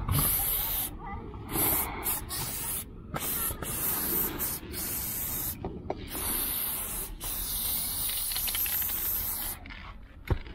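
Aerosol spray paint can spraying in runs of a second or two, the hiss stopping briefly between strokes several times.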